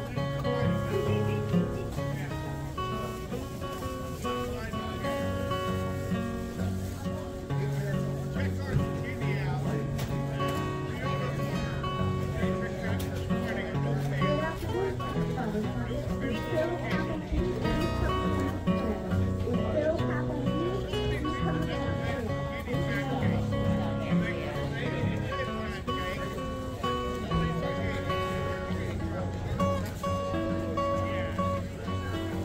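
Solo cutaway acoustic guitar played continuously, held chords and melody notes changing every second or so.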